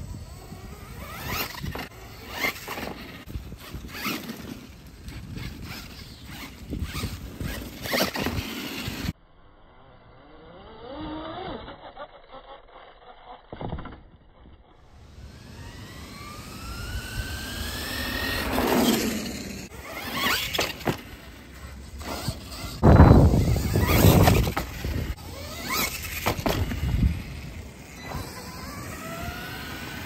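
RC monster truck driven fast on asphalt: its motor whines up and down in pitch as it accelerates and slows, with tyre squeal and scrabbling. A loud, deep burst comes about two-thirds of the way through as it passes close.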